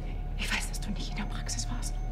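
A hushed voice speaking over a steady low drone, from a TV drama's soundtrack.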